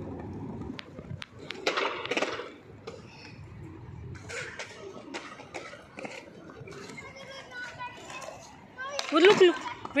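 A young child's voice calling and babbling on and off, with a louder call that bends up and down about a second before the end.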